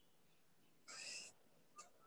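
Near silence, broken by one faint, short, hissy sound about a second in and a tiny click near the end.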